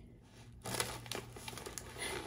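Snack bag crinkling as pretzel sticks are pulled out of it by hand. The crinkling starts about half a second in, with small irregular crackles.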